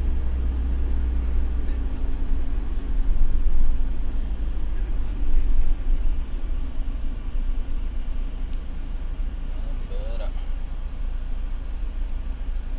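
Steady low rumble of engine and road noise inside the cabin of a moving passenger minibus, swelling a little a few seconds in, with a brief voice about ten seconds in.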